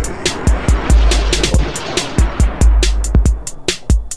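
Breakbeat electronic dance track: a heavy bass line under a fast, busy drum-machine beat with sharp hi-hat and snare hits, and a hissing wash over the first three seconds that thins out near the end.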